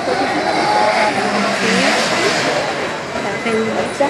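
People's voices talking over the rush of a passing car, whose noise is loudest about a second or two in and then eases.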